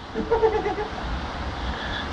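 A short, wavering laugh in the first second, over a steady low rumble of background noise.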